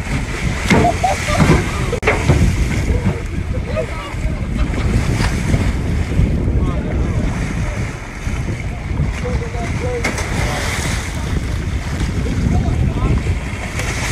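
Water splashing and churning against a boat's hull as a great white shark thrashes at a bait on the surface, with wind buffeting the microphone.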